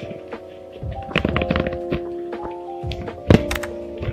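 Soft background music with held notes, over a series of knocks and taps from objects being handled and set down. The loudest thunk comes about three and a quarter seconds in.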